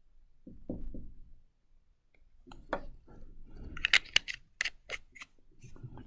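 Small sharp clicks and taps from a plastic super glue bottle being handled and put down on a table, coming as a quick run of about eight clicks between four and five seconds in.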